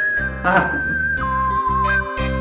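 Background music for a comedy scene: a high, whistle-like melody over a steady bass line, the tune dropping to a lower note about a second in and rising again near the end. A short noisy swish sounds about half a second in.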